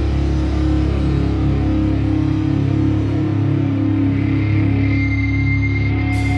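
Live rock band holding a long sustained guitar-and-bass chord with no drum strokes. A thin high tone comes in about four seconds in.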